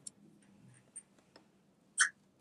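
A quiet pause with a few faint light clicks, then a brief, sharper papery rustle at the end, from the pages of a book being handled on a desk.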